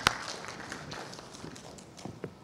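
Brief, light applause from a small audience, fading out, opened by a single sharp knock.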